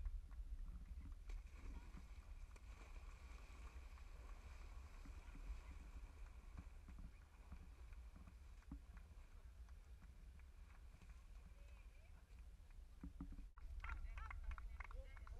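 Faint outdoor ambience: wind rumbling on the microphone, with distant voices and people splashing and wading through muddy water.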